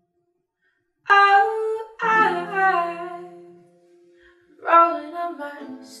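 A woman singing long wordless notes over a softly picked acoustic guitar, starting suddenly about a second in after a brief silence; a second sung phrase comes in near the end as the lyrics begin.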